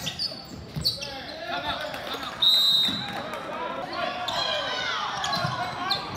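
Basketball game sounds in a gym: a ball bouncing and players' and spectators' voices, then midway through a referee's pea whistle blows once, a high warbling tone about half a second long, the loudest sound here.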